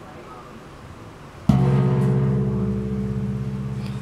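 A 27-inch antique hand-made brass bossed gong (a tawak from Brunei) struck once about a second and a half in, then ringing on with a low hum of several steady tones that slowly fades.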